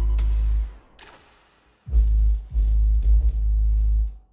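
Trap music's deep sustained bass notes playing through a Genius Audio N4-12S4 12-inch shallow subwoofer, with an unconnected second woofer in the box working as a passive radiator. The bass drops out to near silence about a second in and comes back in just before two seconds.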